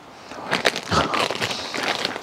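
Dense, irregular crinkling and crunching from a bag of tortilla chips being handled, beginning about half a second in.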